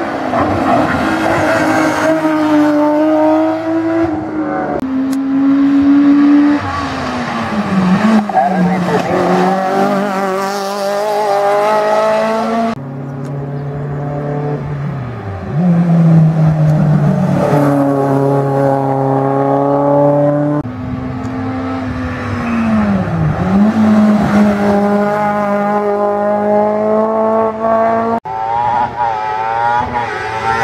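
Hillclimb racing cars, a BMW E36 and then a small boxy saloon, driven flat out up a winding road. The engines rev high, the pitch climbing through the gears and dropping sharply twice as they lift for bends. The sound changes abruptly twice, once near the middle and once near the end.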